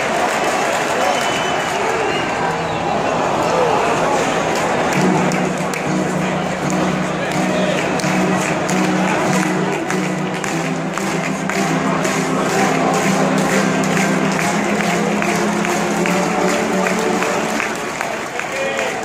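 Baseball stadium crowd cheering and clapping loudly. From about five seconds in until near the end, music plays over it through the ballpark sound system as long held low chords.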